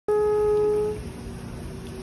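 A group of alphorns holding one long note that breaks off about a second in, leaving a fainter held tone.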